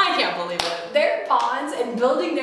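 Two young women laughing, with a single sharp hand clap about half a second in.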